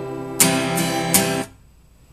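Acoustic guitar playing the closing chords of a song: a chord ringing on, then three strums in about a second, choked off sharply about one and a half seconds in.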